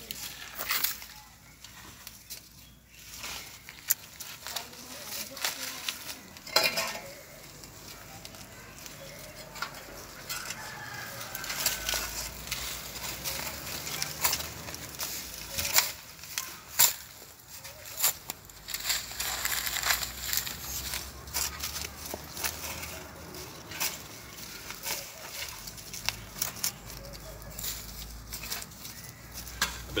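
Loose soil and dry leaves being scraped and pressed by hand around a newly planted banana sucker, with scattered short rustles and clicks. A rooster crows in the background.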